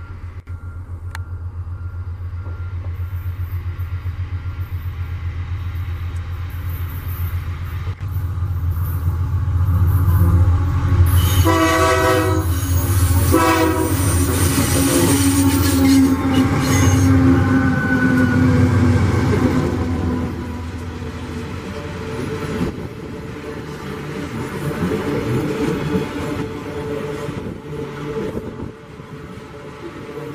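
A loaded iron-ore train passing close by. A diesel-electric locomotive's engine pulses low as it approaches, and its horn sounds in two blasts about halfway through. The loaded ore wagons then roll past with wheel clatter and some squeal from the wheels on the curve.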